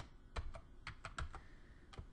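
Computer keyboard typing: a handful of faint, irregularly spaced keystrokes.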